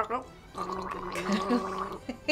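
A woman gargling a mouthful of whiskey: one held, steady gurgle starting about half a second in.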